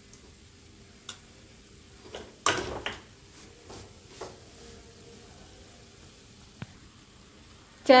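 Steel spoon scraping and clinking against a steel kadhai as gram flour roasting in ghee is stirred: a few short scrapes and clicks, the loudest a little over two seconds in, and a sharp click near the end.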